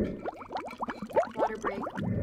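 Water glugging in a water bottle as it is drunk from: a quick run of short, rising bubbly blips.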